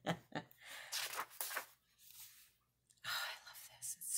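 A woman laughing softly and breathily in short bursts, with breathing between them.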